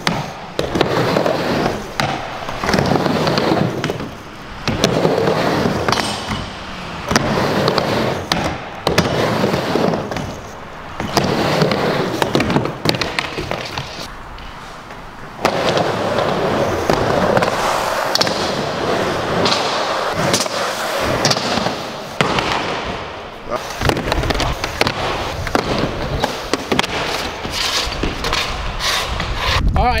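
Skateboard riding on ramp-armor-surfaced mini ramps: wheels rolling, with repeated sharp clacks and knocks as the board hits the ramps and slides across a metal rail, in a string of short cuts. A low rumble comes in over the last few seconds.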